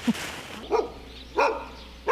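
A dog barking twice, short barks about two-thirds of a second apart.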